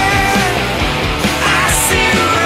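Rock band music, a stretch without vocals. There is a short burst of high hiss near the end.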